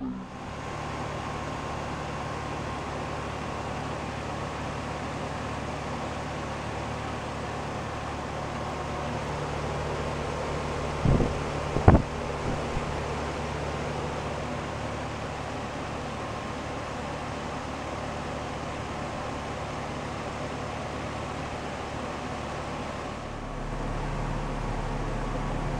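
Rheem three-ton air-conditioner condensing unit running: a steady hum from the compressor and condenser fan, with a faint steady higher tone over it. Two sharp knocks, a little under a second apart, come about halfway through.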